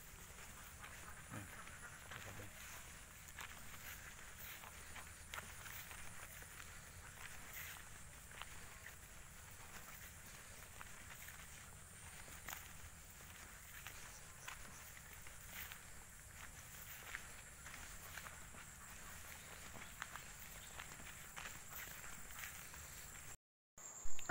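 Faint footsteps of a person walking along a dirt path, with a steady high thin tone in the background. A brief dropout near the end.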